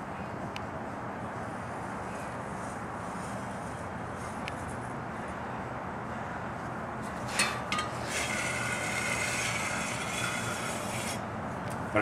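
A steel straightedge on a Peter Wright anvil's freshly ground face: two sharp clicks about seven seconds in, then about three seconds of metal-on-metal scraping as it slides across the face while the face is checked for flatness. A steady low background noise runs underneath.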